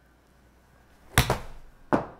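Golf iron swung at a ball addressed off the hosel: a short swish, then a sharp, loud club-on-ball strike about a second in, followed by a second sharp thump just before the end.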